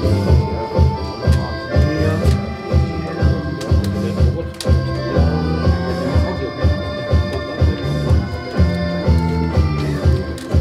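Instrumental introduction of a song: a melody line over a steady, regular bass beat.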